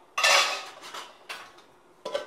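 Stainless-steel plate taken from a wire dish rack and set on a steel bowl as a lid: a loud metallic clatter with a short ring, then a lighter clink about a second later.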